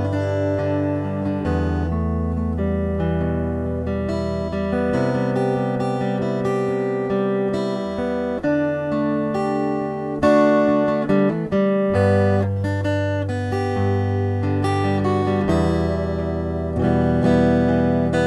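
Acoustic guitar playing chords in the instrumental break of a slow Taiwanese Hokkien ballad, over long held low notes, with no singing.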